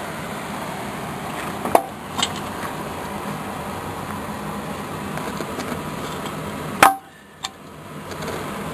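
A steady running noise with a couple of light knocks about two seconds in, then one sharp, loud knock near the end, after which the steady noise drops away for about a second.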